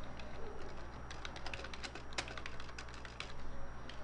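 Typing on a computer keyboard: a run of quick, irregular key clicks, most of them from about one to three seconds in.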